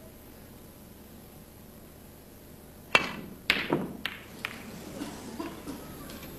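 Snooker balls being played: a sharp knock about three seconds in, then four or five more knocks over the next second and a half, growing fainter, as the cue strikes the cue ball and the balls click together.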